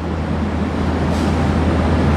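A steady low hum with an even hiss over it, unchanging through the pause; the same background noise runs under the speech on either side.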